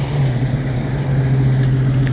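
Lifted Jeep on large off-road tyres driving past close by, its engine giving a steady low drone.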